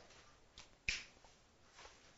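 A single sharp click about a second in, with two fainter short noises before and after it.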